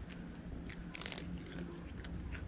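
Cat chewing dry kibble: a string of short, irregular crunches, loudest about a second in.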